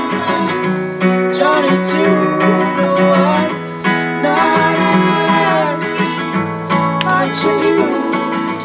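Acoustic guitar strummed while a man and a woman sing together, a live duet through microphones, with sung phrases coming in and out over the steady guitar.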